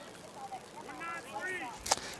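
Faint distant voices calling out across the baseball field, then one sharp crack near the end.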